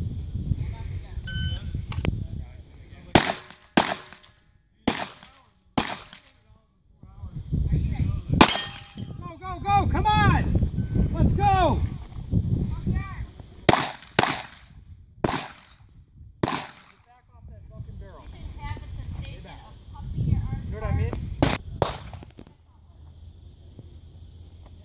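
Handgun shots fired in irregular strings during a practical-shooting transition drill: four shots about a second apart, one single shot, four more, then two in quick succession near the end. A short electronic shot-timer beep comes about a second in.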